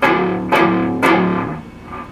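Distorted electric guitar in drop D tuning striking a chord three times, about half a second apart, the last left ringing out and fading.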